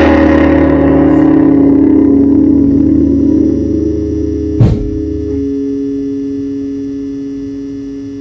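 Final guitar chord of a song, struck once and left to ring out, fading slowly. A short thump comes about four and a half seconds in, and the deepest notes drop away there.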